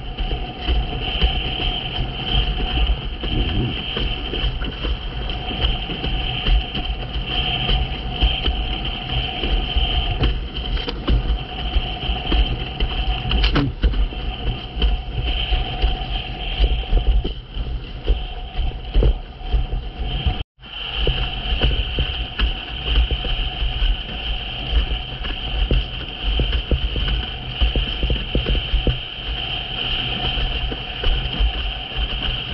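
Wind buffeting the microphone and water rushing and slapping under a windsurf board sailing fast through chop: a loud, steady rumble. The sound breaks off for an instant a little past two-thirds of the way through.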